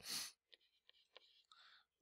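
Near silence: a short breath, then a few faint ticks of a stylus on a tablet screen as a number is written.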